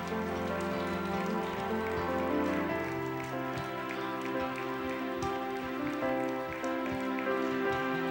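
Slow keyboard music in sustained chords, with scattered hand clapping from the congregation.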